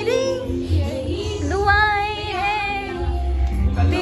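A song playing: a high woman's voice singing with vibrato on the held notes, in phrases over a backing track with a deep bass.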